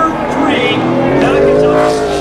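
A NASCAR Cup car's V8 revving hard during a burnout, its pitch climbing through the second half, with crowd voices around it.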